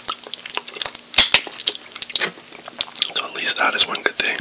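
Close-miked chewing and wet mouth sounds of a person eating sauce-covered chicken wings: irregular smacks, sticky clicks and crackles.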